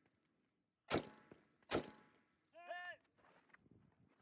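Two sharp rifle shots from a KP-15, a little under a second apart, heard faintly. A brief pitched sound that rises and falls follows about a second later.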